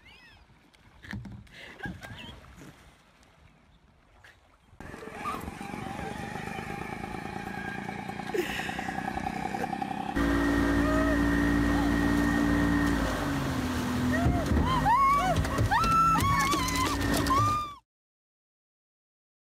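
A boat's motor running steadily at speed, with a voice crying out in repeated rising-and-falling shrieks over it near the end. Before it comes a quieter steady motor hum and a few scattered knocks and splashes.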